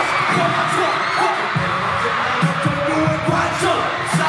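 A live hip-hop track played loud through arena speakers and recorded on a phone, its pulsing bass beat coming through as heavy repeated thumps, with a crowd screaming over it.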